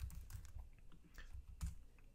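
Faint, scattered keystrokes on a computer keyboard: a few separate taps while a line of code is typed and a command is run.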